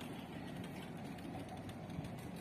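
Steady low rumble of road traffic beyond a roadside noise barrier, with no single vehicle standing out.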